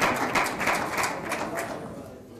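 Indistinct background murmur and small clicks and rustles in a large chamber, fading away toward the end.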